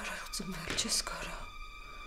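A woman whispering for about a second, then a faint steady hum.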